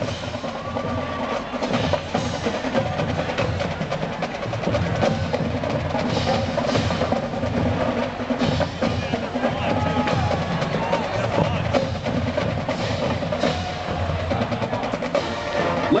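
Marching band drumline playing a steady percussion cadence, with a stadium crowd talking behind it.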